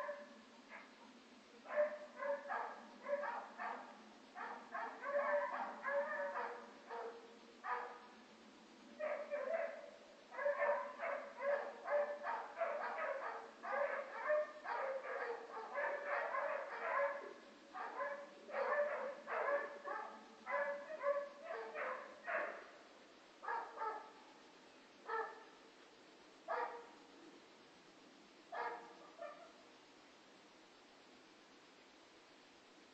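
A dog barking repeatedly in quick runs of short barks. Near the end it thins out to single barks a second or more apart.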